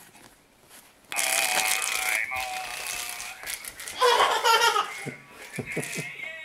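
A novelty hamburger greeting card's sound chip plays through its tiny speaker as the card is opened, starting suddenly about a second in. The sound is a buzzy, rattly, laughing voice, and more laughter follows a few seconds later.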